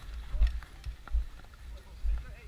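Footsteps on a dirt trail heard through a head-mounted camera, as irregular low thuds with the jostle of gear as the wearer moves along at a quick pace.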